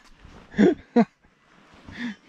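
A man laughing briefly: two short voiced bursts about half a second apart.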